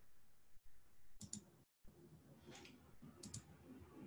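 A few faint mouse clicks against near silence, two of them in quick pairs.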